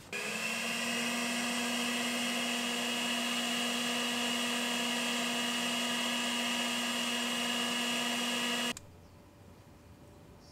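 WORX electric leaf blower running at one steady pitch, blowing air into a smouldering wood fire pit to feed oxygen to a fire that is starved of air. It shuts off abruptly near the end.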